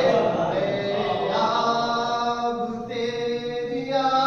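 A man's voice chanting a manqabat, a devotional praise poem, in long held notes that slide between pitches, with a new phrase beginning about a second in.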